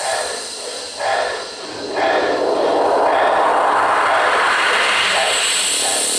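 A jet-like whooshing noise effect in the dance music, with the beat and bass dropped out: two short swells in the first two seconds, then a loud steady rush.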